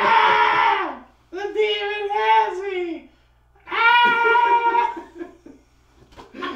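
A man's voice crying out in three long, drawn-out yells with short pauses between them; the middle one wavers and falls in pitch at its end.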